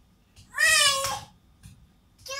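A toddler's voice: one high-pitched, drawn-out call lasting about half a second, starting about half a second in.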